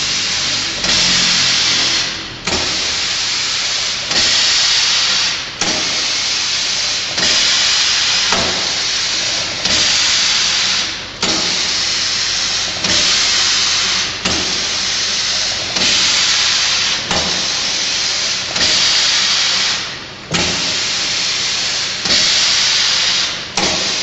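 Compressed air hissing from a pneumatic chisel mortiser's air cylinders and valves, in repeated bursts about every one and a half seconds as the machine cycles its chisel head up and down. Each burst starts sharply and tails off, with a low hum underneath.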